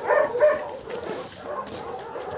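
Dogs making several short, high-pitched vocal sounds while playing, strongest in the first half second and then fainter.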